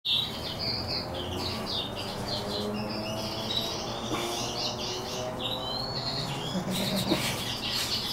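Small birds chirping continuously, many short high calls and brief whistled glides one after another.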